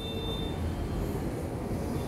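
A steel ladle stirring and scraping groundnuts, sesame and coriander seeds as they fry in a little oil in a kadai, over a steady hiss. There is a brief thin squeak of metal on metal at the start.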